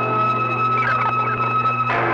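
A pop record playing on an off-air AM radio recording, under a steady high whistle tone and a low hum from the reception; the sound changes abruptly near the end.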